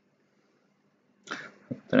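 Near silence for over a second, then near the end a short voice sound as the narrator starts speaking again.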